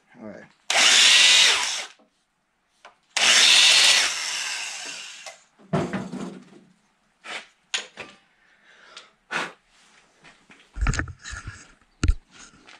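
A handheld electric drill spins a 45-degree valve seat grinding stone on its pilot shaft against the cast-iron valve seat of a hit-and-miss engine head, cutting a new face into the worn seat. It runs in two bursts, about a second and then about two seconds long. Short knocks and clatter follow as the tools are handled.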